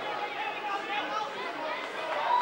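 Indistinct chatter of several voices talking and calling out at once.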